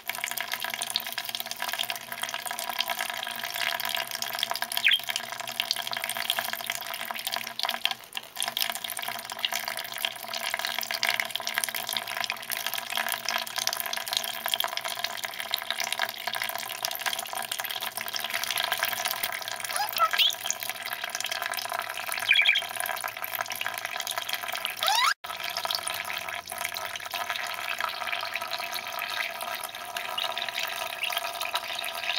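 Tap water running in a steady thin stream into a shallow plastic dish, splashing as a budgerigar bathes and flaps in it. A few brief chirps sound over the water.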